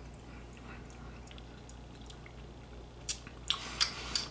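Mouth sounds of someone sipping and tasting tequila: a few sharp, wet lip smacks and tongue clicks starting about three seconds in, after a quiet stretch with a low hum.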